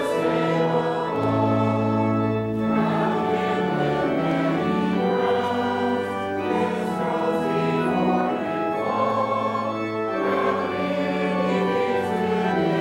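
Choir singing a slow hymn with organ accompaniment, held chords changing every second or so.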